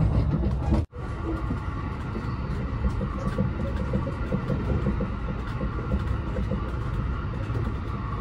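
JR West 289 series electric train running, heard from inside the passenger cabin: a steady low rumble of wheels on rail. The sound drops out sharply for a moment about a second in.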